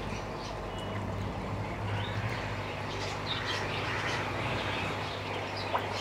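Faint, scattered bird chirps over a steady low hum.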